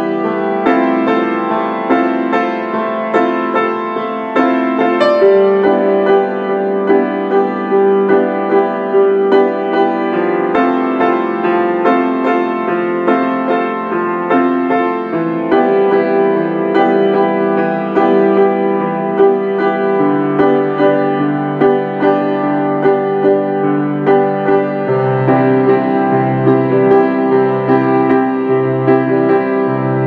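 Solo piano piece played on a Steinway mini grand and recorded on an iPhone: a calm, slow melody of repeated notes over sustained chords. About five seconds before the end, low bass notes come in, struck roughly once a second.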